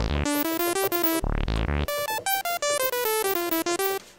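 Analog modular synthesizer: a sawtooth oscillator through a Synthesizers.com Q150 transistor ladder filter, played from the keyboard as a quick run of notes. The two low notes brighten as the filter opens over each note. The higher notes sound brighter because the filter cutoff follows the keyboard.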